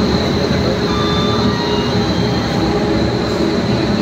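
Railway locomotive standing close by, running steadily with a low rumble and a thin high whine, as it is being coupled to the train's coaches.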